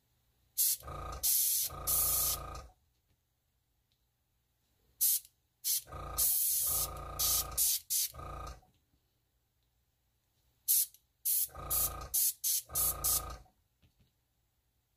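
Airbrush blowing air in three groups of short hissing bursts, each with a low hum underneath, as it pushes wet ink out into spiky leaf sprigs on glossy photo paper.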